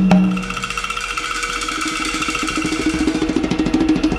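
Music score: a rapid, even ticking percussion pattern over held tones. A low note fades out about a second in, and the music slowly builds in loudness.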